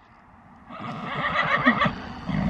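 A horse whinnying, starting a little under a second in and growing louder.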